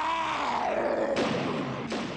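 A film monster's long roar that sags in pitch and turns rough and hoarse before cutting off near the end.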